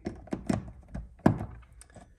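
A few sharp knocks and clicks from handling a motor cord and wire cutters against an adjustable bed base's frame and control box, the loudest a little past halfway.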